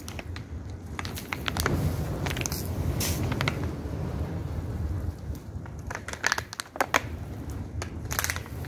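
Fire burning in a building's doorway, crackling and popping over a steady low rumble, with two sharper snaps near the end.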